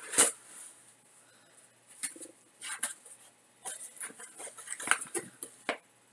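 Small objects being handled at a desk: scattered light clicks and knocks, the loudest a sharp click just after the start, with quiet gaps between.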